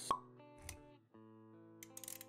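Intro jingle for an animated logo: a sharp pop sound effect just after the start, a short swish a little later, then held musical notes.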